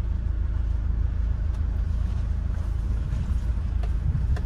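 Steady low engine and road rumble heard inside the cabin of a Hyundai van being driven.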